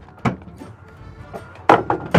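Two knocks on a pickup truck's tailgate as it is handled: a short one just after the start and a louder one near the end, with light background music under them.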